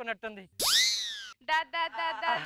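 Cartoon-style comedy sound effect: a pitched swoop that shoots up steeply and then slides slowly down, lasting under a second.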